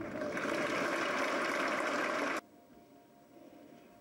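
Spectators applauding a won point, a dense even clapping that cuts off abruptly about two and a half seconds in, leaving a quiet arena background.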